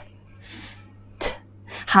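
A woman pronouncing the unvoiced English consonant sounds /f/ and /t/ on their own: a soft breathy hiss about half a second in, then a short sharp puff a little past one second.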